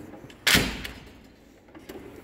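Steel tool chest drawer shut with one sharp metallic bang about half a second in, fading quickly, with a few faint clicks of the drawer slides afterwards.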